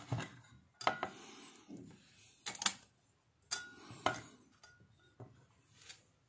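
Handling noise from small electronic parts being fitted together on a hard bench: about a dozen irregular clicks and knocks of components against the metal heatsink and transformer, with rubbing between them.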